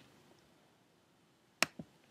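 Quiet, then a single sharp click from working the computer about one and a half seconds in, with a fainter click just after.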